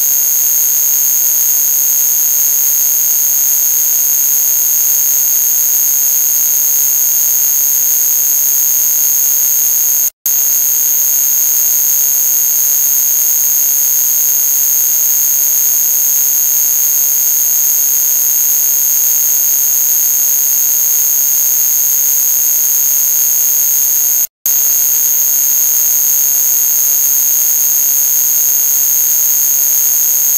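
A very loud, steady, piercing high-pitched electronic tone over a harsh hiss, alarm-like and unchanging. It cuts out for an instant twice, about a third of the way in and again near the end.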